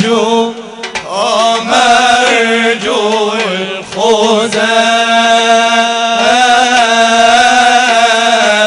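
Islamic nasheed: a male voice chants an ornamented, wavering melodic line over a steady held low drone, with a short breath pause near the start.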